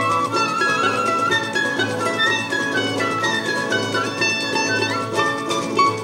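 Live acoustic Brazilian instrumental ensemble playing: flute, a small mandolin-like plucked instrument and acoustic guitar over hand percussion. A melody line steps downward through the middle of the passage above steady plucked accompaniment.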